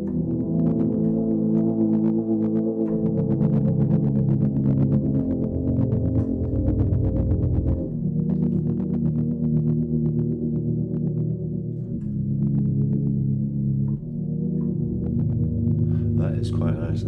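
Sampled grand piano melody in A minor from the Hammers + Waves Modern Grand set, played through Drop Designer's 'Shakey Waves' wobble effect: sustained, muffled chords that change every few seconds.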